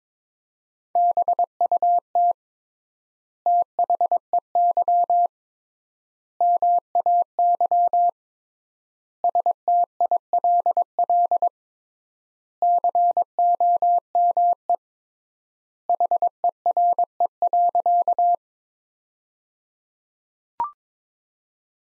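Morse code sent as on-off beeps of a single steady pitch at 22 words per minute. It spells out the six words "BUT THEY MAY STILL COME HERE" in six separate bursts, with long pauses between words (three times the standard word spacing).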